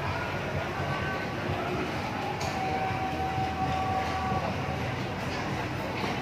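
Busy eating-place ambience: indistinct background chatter over a steady low hum.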